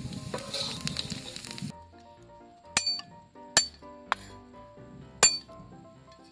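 Ginger strips sizzling in hot oil in a wok, with the metal ladle scraping and clinking, until the sizzle cuts off suddenly after a second and a half. Then four sharp knocks of a cleaver striking a wooden chopping board while garlic is cut, spaced about a second apart.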